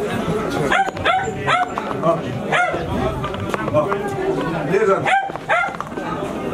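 A dog barking repeatedly in short, sharp barks, with people talking behind it.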